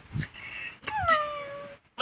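A cat's meow played as a recording through a phone speaker by Google Assistant. It is one call, starting about a second in and falling in pitch.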